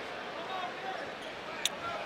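Basketball arena ambience: a steady crowd murmur with faint distant voices, and one sharp click near the end.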